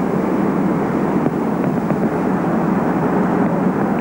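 Steady low rumble of outdoor city background noise, even and unbroken.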